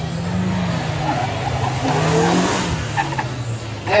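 Renault Twingo RS's 1.6-litre four-cylinder engine driven hard on an autoslalom run, its pitch rising and falling as it accelerates between turns and sinking near the end as the car slows. There is a burst of tyre noise about two seconds in.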